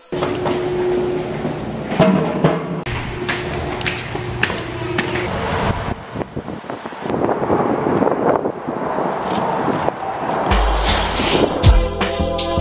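Background music mixed with skateboard wheels rolling over concrete, a steady rough rumble with occasional clicks from joints in the pavement.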